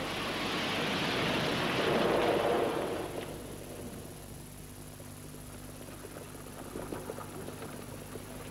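A broad rushing noise that swells for about two and a half seconds and then dies away, leaving a faint steady hiss with a low hum underneath.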